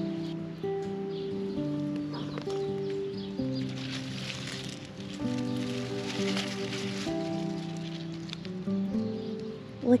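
Background music: a gentle melody of held notes, changing pitch about once a second.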